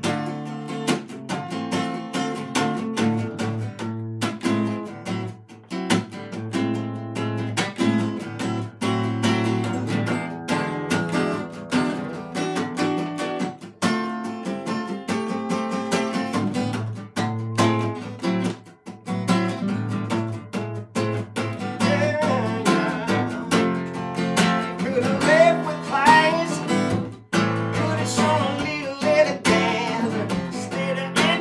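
Solo acoustic guitar playing a blues passage live, strummed and picked with a steady pulse. A singing voice comes in over the guitar near the end.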